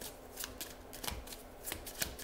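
Oracle cards being shuffled and handled: faint, scattered light clicks of card against card.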